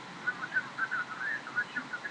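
Faint, tinny voice of the caller at the other end, heard through a mobile phone's earpiece during a call: thin, wavering speech with none of the body of a voice in the room.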